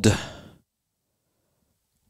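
A man's breathy exhale trailing off the end of a spoken word, fading out within about half a second, followed by near silence.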